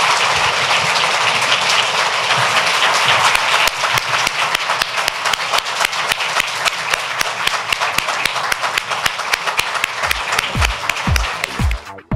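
Audience applauding at length, loud and dense at first, then thinning to separate claps. About ten seconds in, electronic music with a regular thumping kick drum starts.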